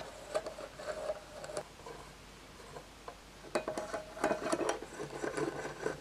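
Screws being driven into the back plate of a metal guitar-pedal enclosure: faint small metallic clicks and scrapes of screwdriver and screws. They come in two spells, with a quieter pause between.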